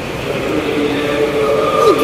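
A man's voice amplified through a microphone, holding long drawn-out notes that dip in pitch near the end, over a steady rumbling background noise.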